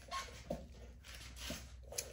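Faint handling noise from knobby motorcycle tires being moved and set side by side: a few soft knocks and rubs of rubber, with a low steady room hum underneath.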